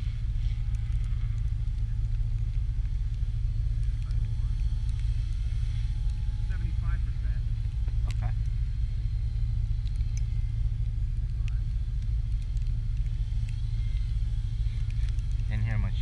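A steady low rumble fills the clip. Over it runs a faint, steady whine from a small electric RC helicopter, an Oxy 3+, flying at a distance.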